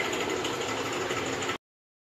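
Steady mechanical background hum that cuts off suddenly about one and a half seconds in.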